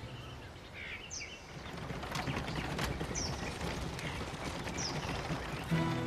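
Outdoor ambience of a steady background hiss with a few short, high bird chirps, each dropping quickly in pitch. Music comes in near the end.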